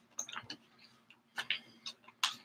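Faint scattered clicks and light crackles from a plastic water bottle being handled, in a few short clusters.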